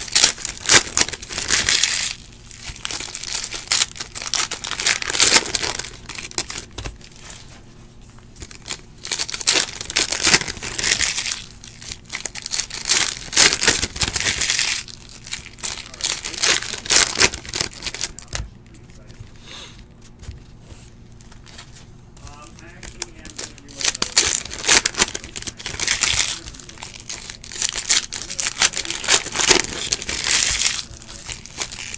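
Football trading-card packs being ripped open: their shiny wrappers crinkle and tear in bursts a second or two long, every few seconds, with quieter handling of cards between.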